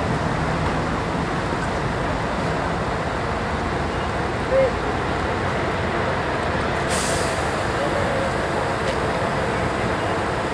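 Parked Scania L113CRL diesel buses idling steadily, with a sudden sharp hiss of compressed air released about seven seconds in that fades over a second.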